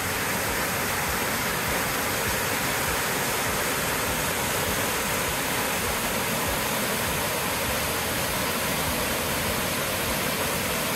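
Waterfall pouring over rock ledges into a pool: a steady rush of falling water.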